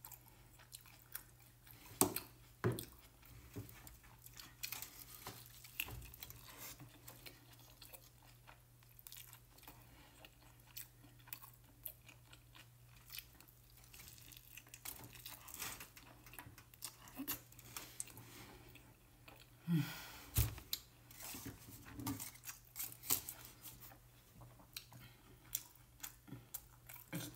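Close-up eating of a chipotle wrap: biting and chewing with some crunch and moist mouth clicks, broken by a few sharper crackles about 2 seconds in, just before 3 seconds and around 20 seconds. A steady low hum runs underneath.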